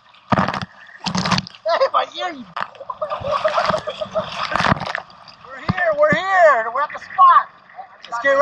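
Sea spray splashing over a moving outrigger canoe and onto the camera, in two short sudden bursts in the first second and a half and a longer rushing spell in the middle.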